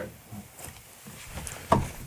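A single short thump about three-quarters of the way through, after a quiet stretch of room tone.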